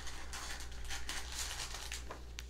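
Irregular rustling and crinkling of packaging being handled and rummaged through, over a low steady hum.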